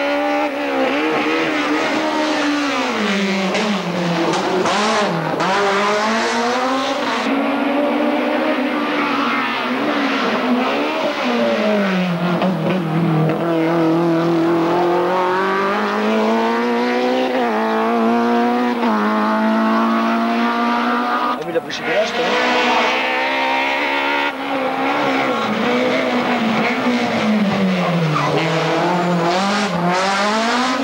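Rally car engines at full throttle on a tarmac stage, the pitch repeatedly climbing and then dropping sharply through gear changes and braking for bends. There is a sudden break about two-thirds of the way through.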